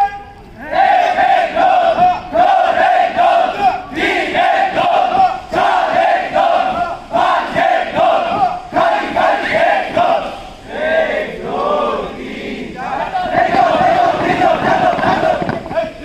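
A group of young cadets chanting loudly in unison, in a fast steady rhythm of short repeated syllables. Past ten seconds the beat gives way to a few longer drawn-out calls, then the rhythmic chant resumes.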